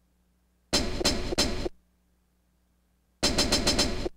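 Dusty sampled hi-hat pattern played back from an E-mu SP-1200 sampling drum machine. It comes in two short bursts of quick, evenly spaced hits, each about a second long: one about a second in and one near the end.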